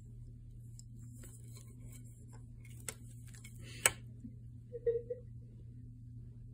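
Miniature plastic graduation-cap cake topper being pushed and tipped about by a cat: a few light clicks and taps, the sharpest just under four seconds in, over a low steady room hum.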